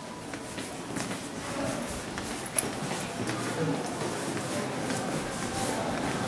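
Indistinct voices of people nearby, with footsteps of people walking through an indoor passage. A single sharp click comes about two and a half seconds in.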